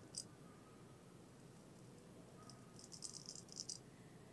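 Straight razor scraping through beard stubble: faint, crisp rasping strokes, one just after the start and a quick run of short strokes in the last second and a half.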